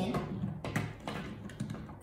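A few light, irregular clicks and taps of plastic LEGO parts being handled as a cable plug is pushed into a LEGO WeDo 2.0 Smart Hub.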